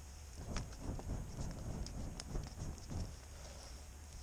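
Footsteps crunching in snow, a handful of irregular steps over about three seconds, with a couple of sharper snaps.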